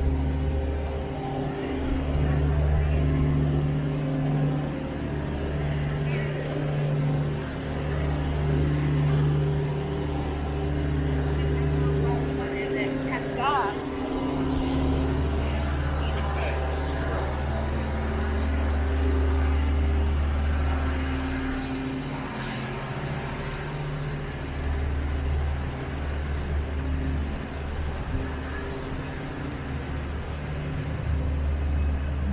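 Downtown street ambience: a steady low hum of vehicle engines that swells and fades, with people's voices now and then.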